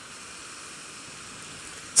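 Steady rushing wind and road noise on a moving motorcycle, picked up by a helmet-mounted camera microphone.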